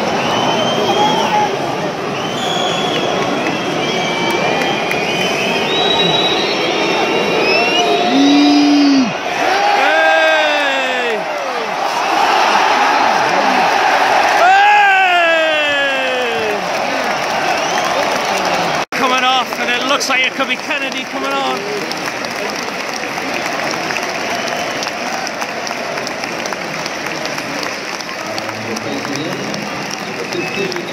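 Football stadium crowd noise: the steady din of a large crowd with individual shouts, including two long falling calls from the crowd around the middle. The sound breaks off for an instant about 19 s in and the crowd noise carries on after it.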